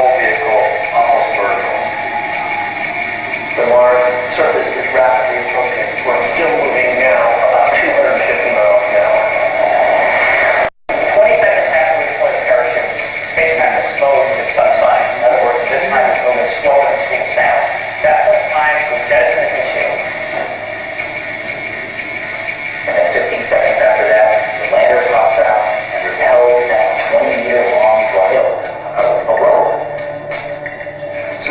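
Soundtrack of a video played through a room's loudspeakers: music with a voice talking over it. The sound cuts out for a split second about eleven seconds in.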